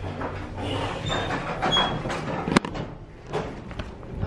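Lift doors sliding and a handheld camera being jostled as it is carried out of the lift, with a sharp click about two and a half seconds in.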